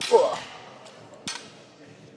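A man's short vocal exhale under effort at the start, falling in pitch, during a barbell Romanian deadlift rep. A single faint click follows a little past a second in.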